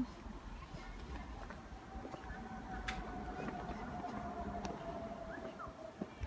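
Quiet city street ambience with a low rumble and a faint steady hum that drifts slightly lower over the last few seconds.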